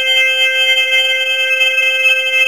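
A recorded audio message made of a chord of steady, unwavering electronic tones, several pitches held together without change, part of a long swell in the recording.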